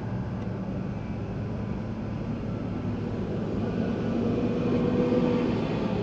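Diesel freight locomotives running with a steady low drone that grows a little louder in the second half.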